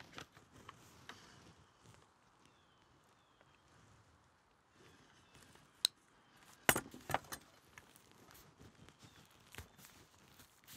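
Quiet rustling of deerskin leather being folded and pressed over a wooden fan handle, with a hot glue gun in use along the seam. A single sharp click comes just before six seconds in, then a louder short run of clicks and knocks about a second later.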